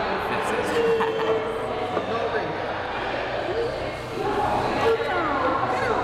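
Indistinct chatter of several voices in a busy room, none of it clear enough to make out.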